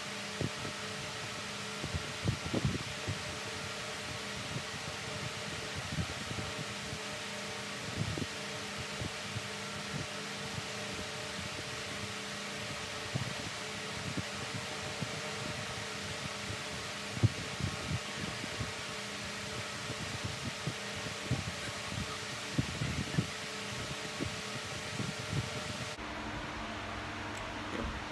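Steady whir of an electric pedestal fan running, with a faint hum in it, and scattered small clicks and taps throughout, the sharpest about seventeen seconds in.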